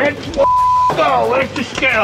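Excited, shouting voices, with one word covered by a flat, steady censor bleep lasting about half a second, a little after the start.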